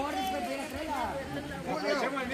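Low chatter of several people's voices talking over one another.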